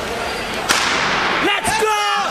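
A starting gun fires once, a single sharp crack about two-thirds of a second in with a long echo in the indoor arena, starting the race. Spectators' voices start shouting and cheering in the last half second.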